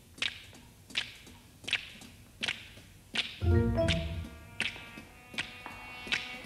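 Sharp finger snaps keeping a slow, steady beat, about four every three seconds, in a sparse jazz orchestral passage. A few low sustained instrument notes enter about three and a half seconds in.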